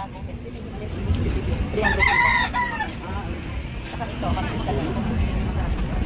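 A rooster crows once, a pitched call lasting about a second near the middle, with a fainter call a couple of seconds later, over steady low market background noise.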